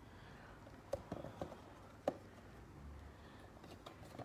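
Faint handling sounds: a few light clicks and taps, about a second in and again around two seconds, over low room tone.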